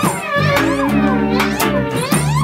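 A live band playing an instrumental passage on cello, electric guitar and keyboard: held low notes under a lead line that slides up and down in pitch, with sharp percussive hits.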